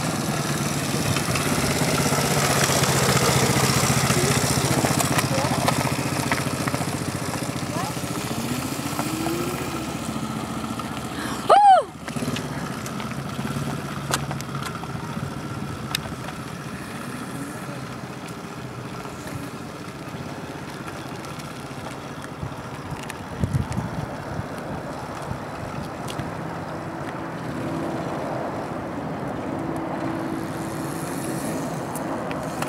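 Small 125 cc quad bike engine running, loudest a few seconds in, then fading away into the distance. A brief, loud, high squeal about twelve seconds in.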